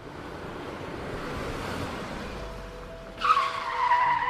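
Car sound effect: road noise swells for about three seconds, then tyres screech suddenly in a loud, high squeal that slides slightly down in pitch, as a car skids.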